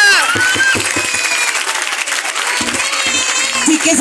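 Audience clapping right after a dance piece's final held note cuts off at the start, with a few voices calling out over the applause.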